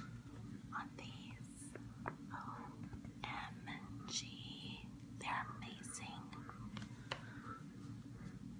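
A woman whispering close to the microphone in short breathy phrases.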